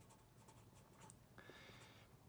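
Felt-tip marker writing on a sheet of paper, faint, a little louder near the end as the strokes continue.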